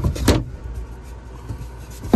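Two dull thumps about a third of a second apart near the start, from a hand pushing a foam bench cushion against its wooden frame close to the microphone, then a steady low background.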